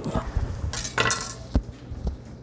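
Serrated bread knife, a little dull, sawing the last of the way through a slice of smoked brisket with its crusty bark: a few short scraping strokes, then a dull knock about one and a half seconds in as the blade meets the wooden cutting board.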